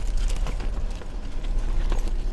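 Clear plastic packaging rustling and crinkling as it is handled, a run of many small crackles, over a low steady hum.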